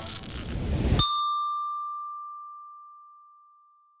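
Channel logo sound effect: a dense rushing noise, then about a second in a single bright ding that rings out and fades away over about three seconds.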